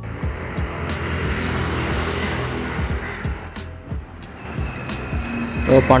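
Loud rushing engine noise of something passing by, fading out about four seconds in, under background music with a steady beat; a man starts talking near the end.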